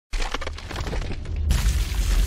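Stone-crumbling sound effect: a dense run of cracks and debris clatter over a deep rumble. It starts abruptly and grows fuller and louder about one and a half seconds in.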